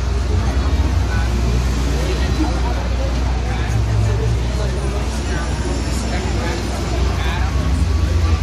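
Busy city street at night: the chatter of many passers-by over a steady low rumble of traffic.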